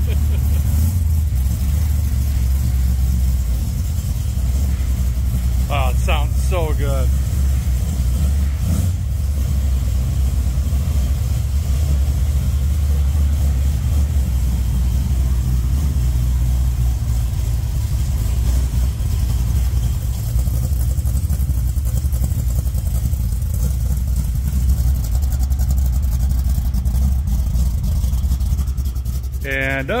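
1973 Plymouth Duster's engine running steadily just after a cold start, a deep, even sound that holds without change.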